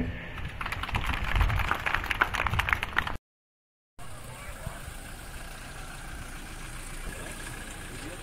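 Audience clapping for about three seconds. The sound then cuts out briefly and gives way to steady outdoor background noise with a car engine running.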